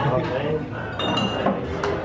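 Glass tableware clinking in a busy restaurant dining room, with a brief ringing clink about a second in and another sharp tap near the end, over voices and laughter.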